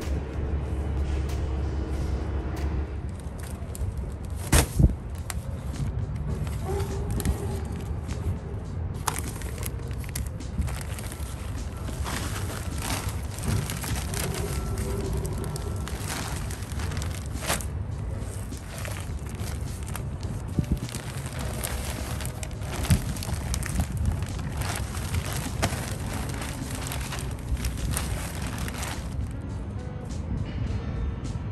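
Background music, with the crackling rustle of garden soil pouring from a plastic bag into a wooden planter box and being spread by hand.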